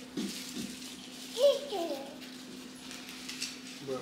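Soft rustling as stiff artificial olive-tree branches are handled and fitted into the trunk, under a steady low hum, with one brief voice sound about a second and a half in.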